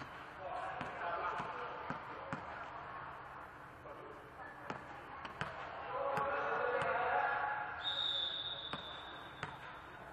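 Volleyball bounced on a hard gym floor: a string of sharp, irregular thuds that echo in a large hall, mixed with players' voices.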